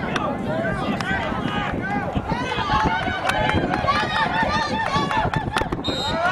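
Sideline spectators yelling and cheering during a play, many high voices overlapping at once.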